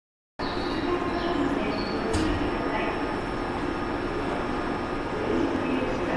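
Steady hum and rumble of a Toei 10-000 series subway train standing at an underground platform before departure, with a short sharp click about two seconds in.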